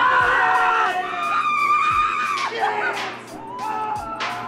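Skycoaster riders screaming as they swing in their harness, with long high screams strongest in the first second and a half, over background music.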